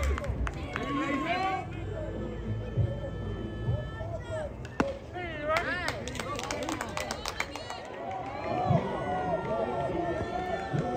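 Youth baseball field ambience: players and spectators chattering and calling out from around the field, with a few sharp knocks mixed in.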